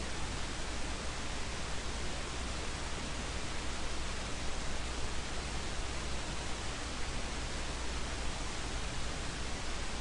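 Steady hiss with a low hum underneath, unchanging throughout: the background noise of a desk microphone and computer while nothing else happens.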